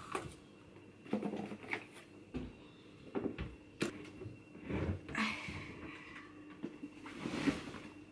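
Laundry handled at a front-loading washing machine: scattered light knocks and clicks, with fabric rustling about five seconds in and again near the end, over a faint steady hum.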